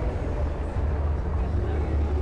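Steady low engine rumble of Chevrolet Camaros driving past in a line.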